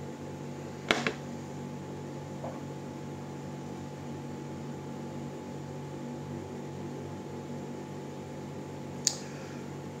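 Steady low appliance hum in a small room. About a second in there is a sharp knock of a drinking glass being set down on a table, and near the end a brief soft hiss.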